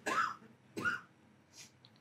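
A man coughing or clearing his throat in two short bursts, about a second apart, followed by near silence.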